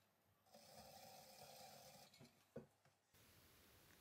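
Near silence, with a faint steady hum starting about half a second in and lasting about a second and a half, and a soft click a little past halfway.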